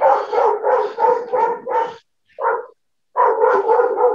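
A dog barking rapidly, about four barks a second, with a short break a little past the middle before it starts again.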